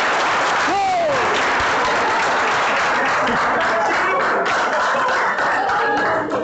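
A roomful of students applauding steadily, with one voice giving a short falling whoop about a second in.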